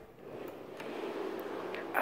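Iron latch on a wooden plank door clicking a few times as it is turned and released. From about half a second in, a steady rush of air grows louder as the door opens onto the pipe organ's chamber, where the organ's wind supply is running.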